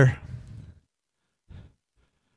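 A man's voice ending a sentence and dying away, then a short breath at the microphone about a second and a half in.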